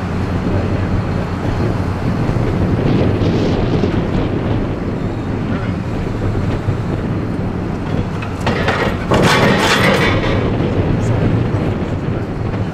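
Forklift engine idling with a steady low hum, joined near the end by a noisy rushing burst that lasts about two seconds.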